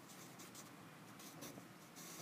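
Pencil writing on a paper textbook page: faint scratching of short strokes as letters are written.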